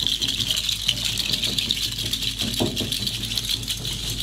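Haida dance rattles shaken steadily in time with a dancer's movements: a continuous, dense, even rattling.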